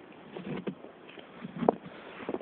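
Footsteps crunching in snow: a few irregular crunches, the loudest near the end.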